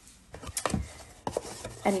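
Cardboard tissue box and paper-towel tube being handled: a few short, light knocks and taps as the tube is set against the box.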